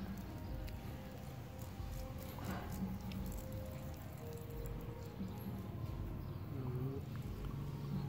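Faint handling of a wristwatch: light clicks and rubbing as the watch is turned over in the hands, over a steady low background hum.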